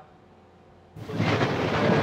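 Thunder: after about a second of quiet, a loud clap breaks in suddenly and rolls on as a deep, sustained rumble.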